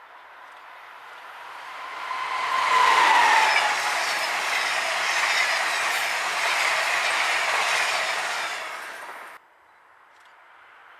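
Amtrak electric passenger train approaching and passing close by at speed: a rising rush of wheels on rail, with a whine that drops in pitch as the front goes by, then the steady rush of the passing cars. The sound cuts off abruptly near the end.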